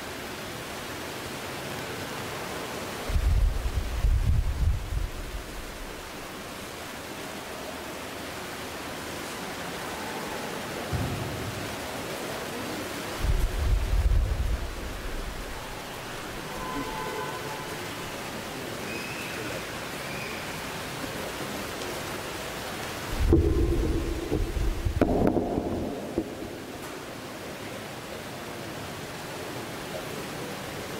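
A steady hiss from an open microphone, broken four times by low rumbles, each a second or two long.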